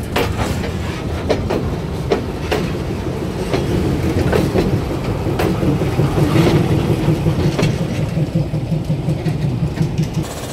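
Railway wagons rolling during shunting: a steady low rumble with irregular sharp clicks and knocks from the wheels over the rail joints, swelling a little past the middle.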